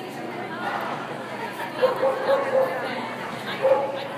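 A dog barking in short bursts, three quick barks about two seconds in and another near the end, over the chatter of people in a large indoor hall.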